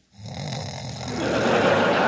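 A man snoring, a rough, fluttering breath, with a studio audience's laughter swelling up over it from about halfway in.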